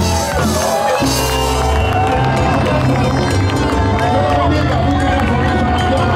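Live salsa band playing, with a man's voice singing or calling over it and a crowd cheering. The bass thins out briefly near the start and the full band comes back in about a second in.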